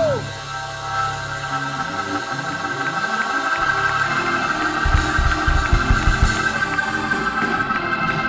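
Church praise music: an organ holds sustained chords, and drums come in heavily about five seconds in, while the congregation claps along.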